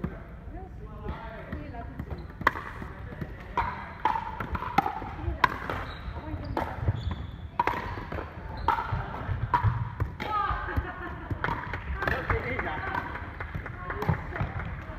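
Pickleball being played: sharp pops of paddles striking the hollow plastic ball, mixed with bounces on the wooden floor, in a run of hits about a second apart starting a couple of seconds in. Voices are heard between the hits.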